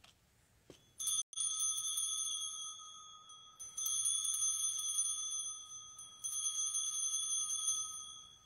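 A sanctus bell struck three times, about two and a half seconds apart, each stroke ringing on and fading before the next. It is rung to mark the consecration of the bread at the words of institution.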